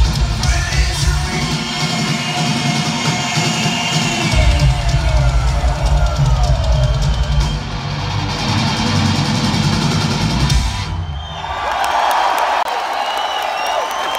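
Heavy metal band playing live through a venue's PA, with a fast, pounding double-kick bass drum under the guitars. The song stops about eleven seconds in, and the crowd cheers and whistles.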